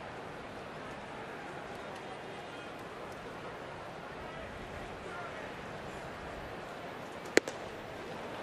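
Steady ballpark crowd murmur, then a single sharp pop about seven seconds in as a 99 mph cutter smacks into the catcher's mitt for strike two.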